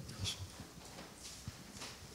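Faint handling noise on a handheld microphone: a few scattered soft knocks and brief rustles as it is moved and lowered.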